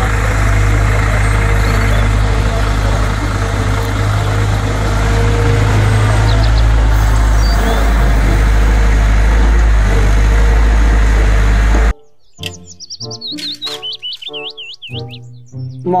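Diesel engine of a Cat M313C wheeled excavator running steadily with a low rumble while it digs and loads, a bird chirping briefly over it. About twelve seconds in the engine sound cuts off and light music with distinct notes takes over.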